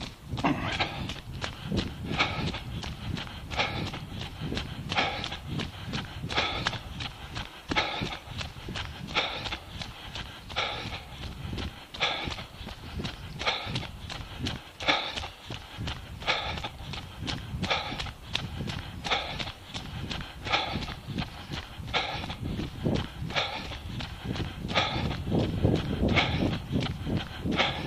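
A runner's footsteps on a path in a steady, even rhythm, picked up by a body-worn action camera, over a low rumble.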